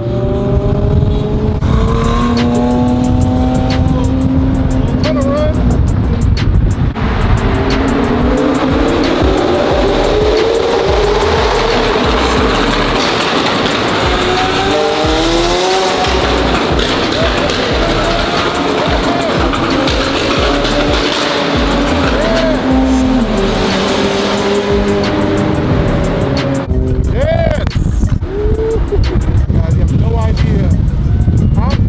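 Supercar engine accelerating hard, its pitch climbing and dropping back several times as it shifts up through the gears. It is loud on the microphone, with rap music playing over it.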